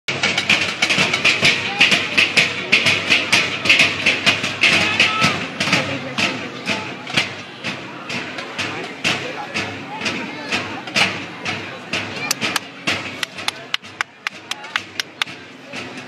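A corps of historical-style side drums playing together: a fast, tightly repeating rhythm of sharp strokes. The drumming is loudest through the first half and drops in level about seven seconds in.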